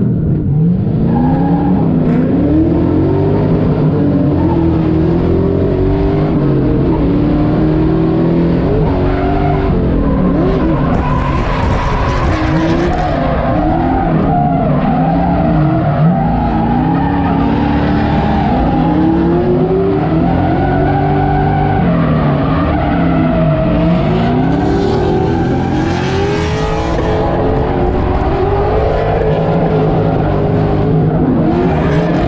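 Drift car engine heard from inside the cabin on a drift run. The revs sweep up and down over and over as the throttle is worked, under tyre squeal. There are two louder stretches of tyre noise, about twelve and twenty-five seconds in.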